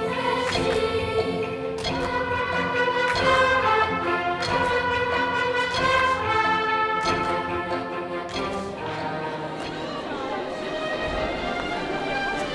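Orchestral music: sustained notes and chords that change about every second, thinning out somewhat after about eight seconds.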